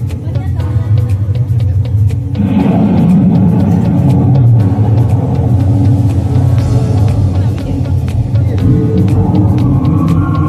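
Dramatic show music with a deep rumbling sound effect, played loud over loudspeakers for the Enma statue's face-changing show; the sound swells and thickens about two and a half seconds in.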